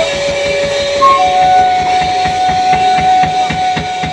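Live rock band: a flute holds one long note, then steps up to a second, higher long note just over a second in, over a steady drum beat.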